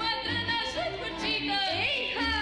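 Female voice singing a Romanian folk song into a microphone, with a folk orchestra's violins and a steady bass beat accompanying.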